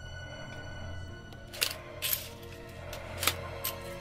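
Dark, low music bed from a stop-motion fight soundtrack, with four sharp hits or clicks in the second half.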